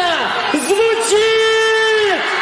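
A voice calling out in sliding, drawn-out phrases, ending in one long held note of about a second that falls away, over a constant crowd hubbub.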